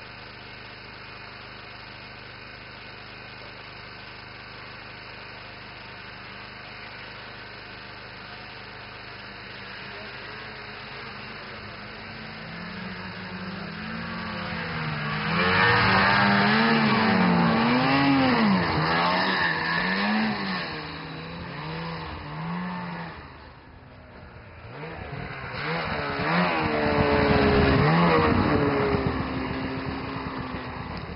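Snowmobile engines revving, their pitch swinging up and down, growing loud about halfway through as the machines come close. The sound drops away briefly, then another loud stretch of revving follows near the end.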